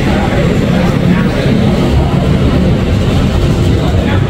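Motor scooter engine running close by over a steady, loud, low rumble of street traffic.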